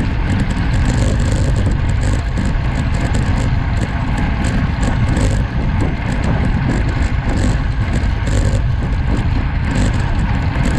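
Wind rushing over a bike-mounted action camera's microphone at about 40 km/h, a steady rumble with the road bike's tyres humming on the chip-seal road.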